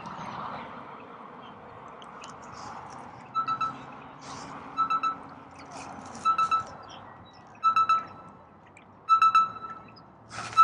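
An electronic alarm beeping: short pulsed bursts of a single high tone about every second and a half, getting louder toward the end.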